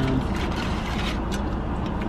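Steady hum and hiss of a car cabin, the car's engine or air conditioning running, with a few light clicks and crinkles as a sauce packet and food wrapper are handled.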